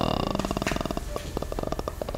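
A man's drawn-out vocal sound trailing off into a low, creaky rattle of rapid, evenly spaced pulses that fades slightly, typical of vocal fry at the end of a hum.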